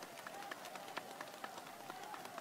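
Faint background noise of an open-air crowd in a pause between spoken phrases, with scattered light claps.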